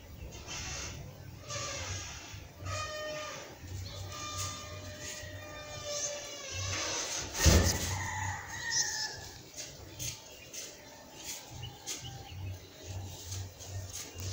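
Background sound with two long, pitched animal calls rich in overtones, the longer one about four seconds in lasting some two seconds, and a sharp thump about seven and a half seconds in.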